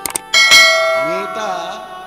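Brass hand cymbals (kartal) of a kirtan ensemble: two quick taps, then a loud clash about a third of a second in that rings on and fades over about a second and a half.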